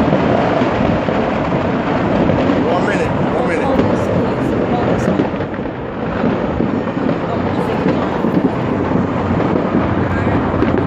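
Many distant fireworks going off at once, merging into a continuous rumble, with a few sharper cracks standing out in the middle and near the end.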